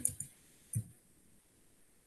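Two computer keyboard keystrokes, short clicks about half a second apart within the first second.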